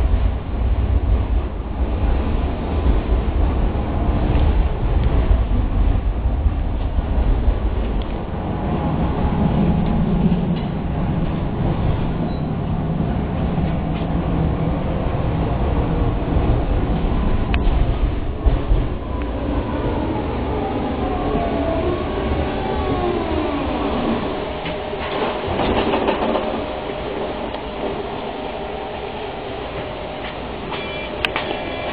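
Tatra T6A2D tram running, heard from inside the passenger car: a steady rumble of wheels on rails and running gear, heaviest in the first third. From about the middle on, a whine glides down and up in pitch for several seconds, with a couple of sharp clicks just before it.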